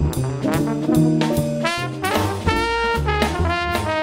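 Live jazz band: a trombone playing a melodic line with some long held notes, over an upright bass line and a steady beat of percussion hits.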